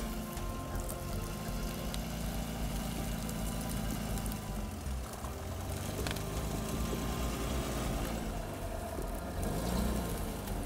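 Toyota Land Cruiser FZJ80's supercharged engine idling steadily, with a brief rise in pitch near the end. Music plays underneath.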